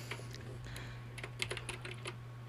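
Faint computer-keyboard typing: a handful of scattered keystroke clicks, several close together past the middle, over a steady low hum.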